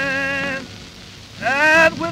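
Old 1920s country blues recording: a male voice holds the end of a sung line over acoustic guitar, dips quieter, then slides up into a rising sung note near the end. All of it sits under the steady crackle and hiss of a worn shellac 78 record.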